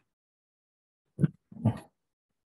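Silence, then two short vocal sounds from a man's voice a little over a second in, low and throaty, just before he goes on speaking.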